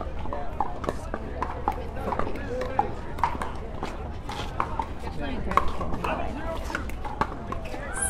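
Irregular sharp pops of pickleballs being struck by paddles and bouncing on the surrounding courts, over a murmur of voices.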